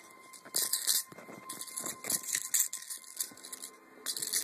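Fabric rustling and scratching in irregular bursts as the cat plays on the bedding, loudest about half a second in and again from about one and a half to three seconds in.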